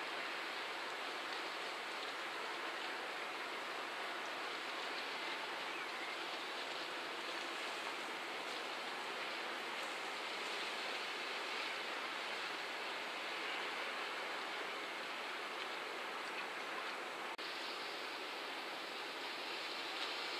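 A steady, even hiss of outdoor ambient noise with no distinct events, dropping out for an instant about three seconds before the end.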